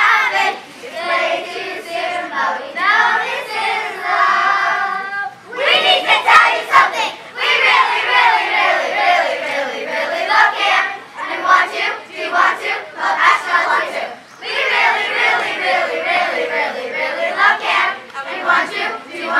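A group of young children singing a camp song together at full voice, with one long held note about four seconds in.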